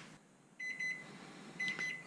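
Microwave oven timer beeping: a quick run of short, high electronic beeps, then a few more about a second later. It signals that the sushi rice's 10-minute simmer is up.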